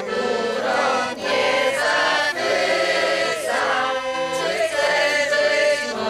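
A mixed group of children and adults singing a song together to a piano accordion accompaniment.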